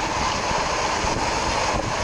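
Steady outdoor background noise with a faint, even hum running under it.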